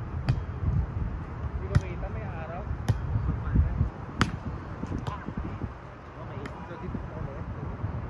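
A volleyball being passed back and forth in a pepper drill: six sharp slaps of hands and forearms on the ball, about one every second or so. A low wind rumble on the microphone runs underneath.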